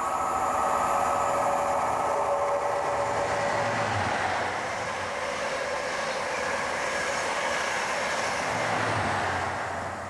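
InterCity 125 High Speed Train with MTU-engined Class 43 power cars passing through at speed: the leading power car approaches with a steady high whine that stops about four seconds in as it goes by. The coaches then rush past, with the trailing power car passing near the end.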